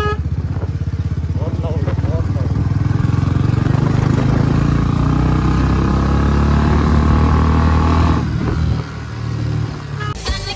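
Royal Enfield Bullet 350 single-cylinder engine running through an aftermarket 'Mini Punjab' silencer, with a deep, fast exhaust thump. The bike accelerates with the engine note rising for several seconds, then the rider eases off the throttle about eight seconds in.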